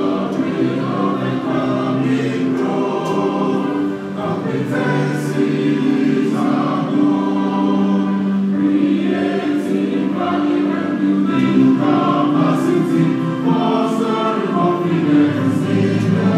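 Many voices singing together, holding long notes in a slow song.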